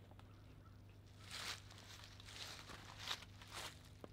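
Near silence: a few faint rustles of clothing and gun handling as a shotgun is raised to the shoulder, over a faint steady low hum.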